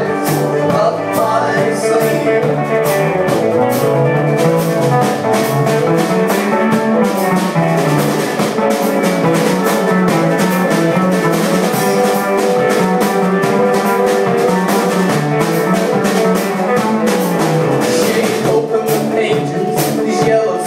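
Live rock band playing an instrumental passage with no singing: electric guitar over a moving bass-guitar line and a steady drum-kit beat.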